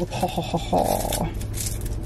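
Paper wrapper being torn and slid off a drinking straw: a run of short scratchy crinkles with a denser rasp lasting about half a second in the middle.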